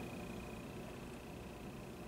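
Quiet room tone with a faint, steady, high-pitched whine and a low hum underneath.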